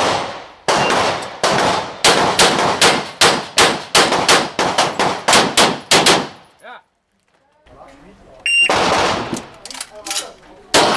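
Pistol fired in fast strings during an IPSC stage, about a dozen and a half shots in the first six seconds, roughly three a second. A pause follows, then the shooting starts again near the end.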